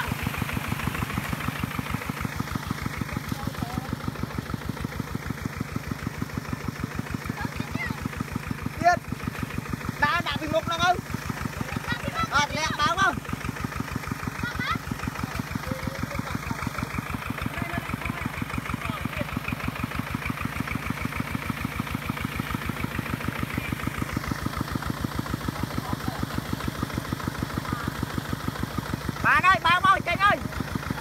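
Single-cylinder diesel engine of a Kubota two-wheel walking tractor running steadily under load in deep paddy mud, its even chugging beat unbroken throughout. Short shouts from people pushing the stuck tractor break in a few times around the middle and again near the end.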